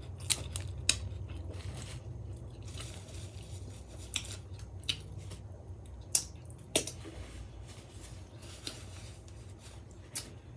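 Close-miked mouth sounds of someone chewing a gyro: scattered sharp, wet clicks and smacks, the loudest about six seconds in, over a steady low hum.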